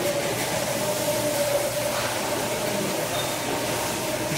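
Steady hum and hiss of supermarket background noise, with a faint steady tone that fades out past the middle.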